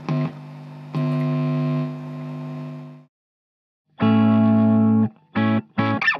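Electric guitar through a Marshall DSL100H valve head on its Classic Gain channel in crunch mode, playing distorted chords. One chord rings and fades, then after a second's break a loud held chord is followed by short choppy stabs.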